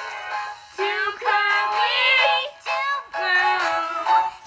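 A cartoon musical number: a voice singing over instrumental backing, in short phrases with long held notes.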